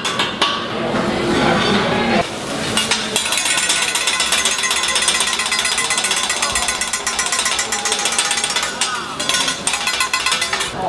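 Metal spatulas rapidly tapping and clattering against a steel teppanyaki griddle as a chef chops and works the food. A fast, even run of strikes starts about three seconds in and stops shortly before the end, after a stretch of voices.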